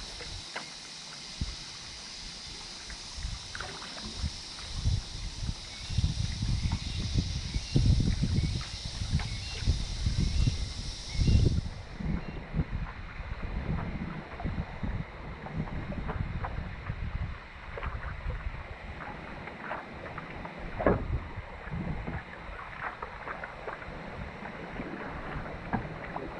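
Stand-up paddle strokes dipping and pulling through calm water, with water lapping around the board, under low gusts of wind on the microphone. A high steady hiss stops suddenly about halfway through.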